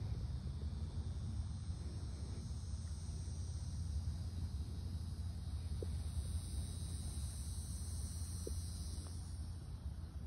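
Open-air ambience: a steady low rumble of wind on the microphone under a constant high insect buzz, with a couple of faint ticks.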